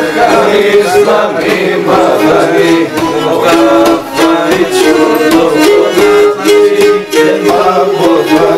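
A Pontic lyra (three-stringed bowed kemençe) playing a running melody in steady bowed notes. Men's singing comes back in near the end.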